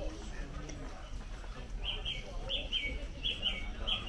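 A small bird chirping: a run of short, downward-sliding chirps, often in pairs, starting about two seconds in, over the background murmur of a busy indoor shop.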